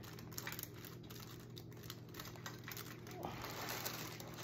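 Faint crinkling and light clicking of hands pressing a ribbon bow with glue dots onto a gift basket handle over cellophane wrap.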